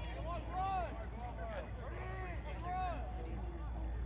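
Distant shouted voices carrying across an open football field, a few long calls that rise and fall in pitch, over steady low background noise.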